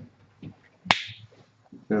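A single sharp plastic click about a second in: the cap of a whiteboard marker being snapped on.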